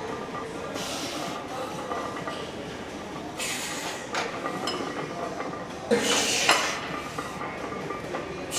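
Heavy barbell bench press reps: a short, forceful rush of breath or strain with each rep, about every two and a half seconds, over a steady gym background with a faint clink of the loaded bar and plates.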